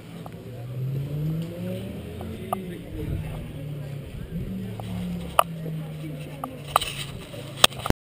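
Action camera being handled, its microphone knocked and rubbing against a racing suit, with several sharp knocks in the second half. Under it a car engine runs nearby, its pitch rising and falling slowly.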